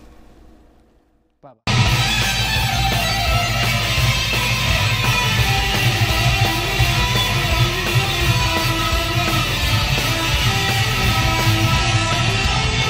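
Electric guitar, a homemade Telecaster copy plucked with the fingertips, playing fast improvised shred lead lines over a rock backing track. The music starts abruptly about two seconds in, after a brief faint click.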